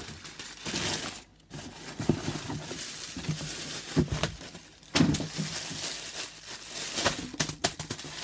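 Crumpled brown kraft packing paper rustling and crinkling as it is pulled out of a cardboard shipping box. Several sharper crackles and knocks come from the handling.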